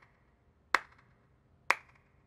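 Sharp, single clicks at a slow, even beat of about one a second, two of them here.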